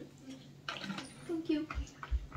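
Quiet voices murmuring briefly, with soft table sounds; no clear sound other than speech stands out.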